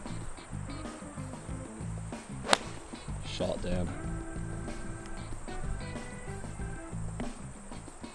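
A four iron striking a golf ball off the fairway turf: one sharp crack about two and a half seconds in.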